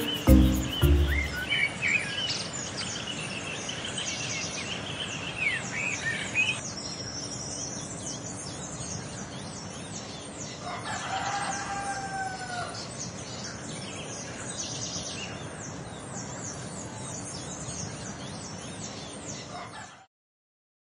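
Small birds chirping throughout, with a single rooster crow lasting about two seconds around the middle. The tail of a music track ends in the first second or so.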